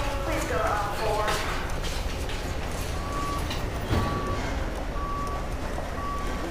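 Hardware-store ambience: a steady low rumble with indistinct voices in the first second or so. From about halfway, a short electronic beep repeats about once a second, with a knock just before the second beep.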